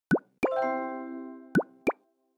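Animated logo sting made of cartoon sound effects. A quick rising pop is followed by a click and a bright chord that rings and fades over about a second, then another rising pop and a click near the end.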